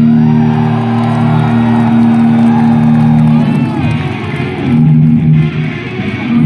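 Unaccompanied electric guitar played loud through an amplifier: a low chord rings out and is held for about three and a half seconds, then gives way to quicker, shifting chords.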